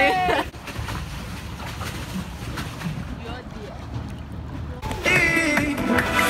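A drawn-out shouted call trails off in the first half-second, followed by a few seconds of low, even outdoor rumble with no clear source. Pop music with singing starts about five seconds in.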